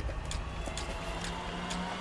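Handling noise: a few light clicks and knocks as boxes and parts are moved about on shelving, over a steady low hum.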